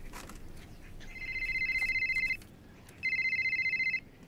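A telephone ringing with a fast electronic trill: two rings, the first a little over a second long starting about a second in, the second starting near the three-second mark.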